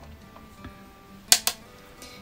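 Soft background music with faint steady notes, broken about a second and a half in by two sharp clicks in quick succession.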